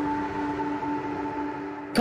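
Ambient background music: a sustained drone of a few held tones with no beat.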